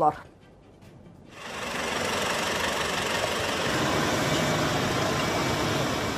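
Steady roadside noise of vehicles idling in stopped traffic, starting about a second in and holding level.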